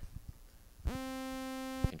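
Serum software synthesizer playing a single sawtooth note for about a second, at steady pitch and rich in overtones, with a click as it starts and stops.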